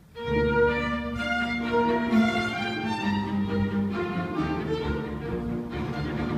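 String ensemble of violins, cello and double bass starting to play together about a quarter second in, with sustained bowed notes in several parts at once.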